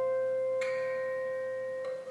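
Solo fingerstyle playing on a James Goodall steel-string acoustic guitar. A single note rings on and slowly fades, and a brighter high note is plucked over it a little over half a second in.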